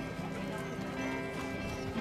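Live music from a children's choir with acoustic guitar accompaniment, held notes sounding steadily.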